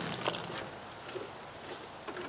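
Water pouring onto a tub of coarse biochar granules to wet it down, the splashing tailing off about half a second in and leaving only faint background noise.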